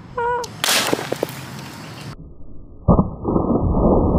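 A loud rushing noise, then a plastic water bottle hitting the ground and bursting about three seconds in: one sharp bang followed by a steady rush of spraying water, low and muffled.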